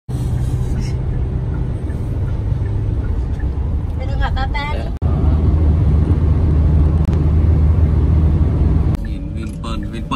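Steady low road and engine rumble of a vehicle driving at highway speed, heard from inside the cabin, loudest in the middle of the stretch. A lower steady hum with a brief voice comes before it, and voices follow near the end.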